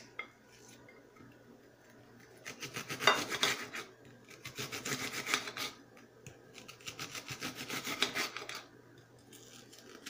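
Kitchen knife dicing an onion on a ceramic plate. It is quiet for the first couple of seconds, then come three runs of quick knife strokes, each a second or two long.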